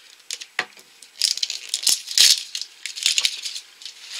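Plastic Grocery Gang mystery egg handled in the hands, with a few short bursts of rattling from the small toy loose inside, loudest about two seconds in.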